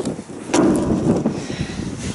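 Wind buffeting the camera's microphone in low gusty rumbles, with a sharp knock about half a second in as the camera is set down on the metal ledge of the tower.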